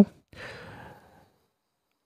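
A person's soft breath out, under a second long, between sentences of narration, followed by silence.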